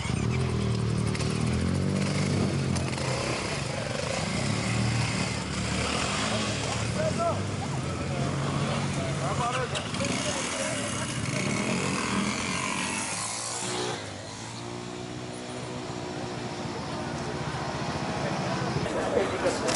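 Motorcycle engines running amid the voices of a crowd of men. A steady low engine note is plainest at the start and again near the end.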